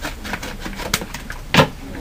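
A padded bubble envelope being torn open by hand: paper and plastic rustling and crackling, with one louder burst about a second and a half in.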